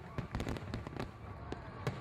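Fireworks sound effect: a quick scatter of crackling pops and sharp cracks.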